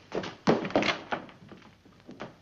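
A string of quick thuds and knocks, the loudest about half a second in, from footsteps and a door being opened.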